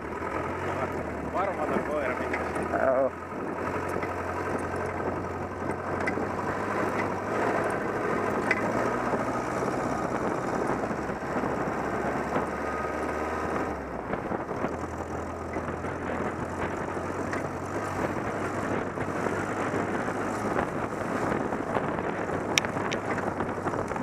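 Off-road buggy engine running steadily while driving over rough field ground, with wind on the microphone. The engine note changes and drops slightly about halfway through.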